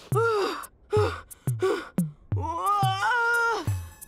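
A boy's exaggerated, pretend-suffering groans and wails, ending in one long drawn-out moan, over a steady thumping beat in background music.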